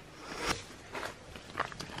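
Faint rustling of bedding and gift wrap as a wrapped present is handled and set down on the bed, with a few light clicks.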